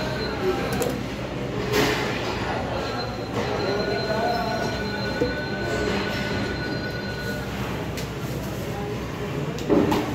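Busy market hall din: a steady wash of background noise with faint distant voices and a few sharp knocks. A thin high whine runs for a few seconds in the middle.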